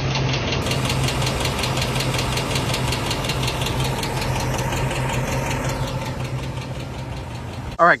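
2007 Ford F-150's 5.4L three-valve Triton V8 running with a steady, rapid tick over the engine hum: the sign of a bad roller rocker arm, as the mechanic diagnosed.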